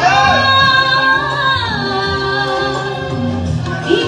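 Live singing through a PA over backing music, in a woman's voice. It opens with a long held note with vibrato, then a falling phrase.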